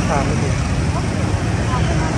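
Busy street traffic at an intersection: motorcycles and cars passing close by with a steady, dense engine rumble, voices faintly mixed in.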